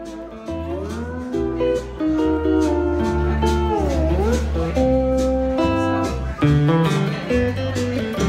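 Electric lap steel guitar played with a slide bar, its notes gliding up and down, with a dip and rise about halfway through. Long held low bass notes run underneath.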